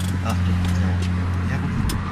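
Steady low hum inside a small aircraft's cabin, with a short sharp click near the end.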